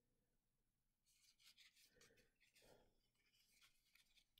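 Near silence, with faint rustling and light scraping from about a second in as a small eyeshadow pot is handled and opened in the fingers.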